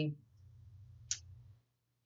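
A pause in speech: a faint low hum and a single short, sharp click about a second in.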